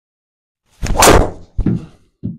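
A driver hitting a golf ball off a tee: one loud, sharp strike about a second in, followed by a second, smaller thud.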